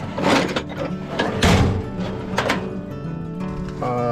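A metal tool chest drawer sliding open with a thunk about a second and a half in, and a few clinks of steel wrenches being handled, over background music.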